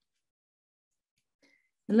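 Near silence in a pause between sentences, with one very faint brief tick about a second and a half in. A woman starts speaking just before the end.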